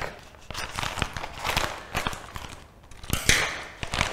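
Scissors snipping through a plastic bag of frozen sardines in a run of irregular clicks, then the bag's plastic crinkling in a short rustle as it is lifted, a little after three seconds in.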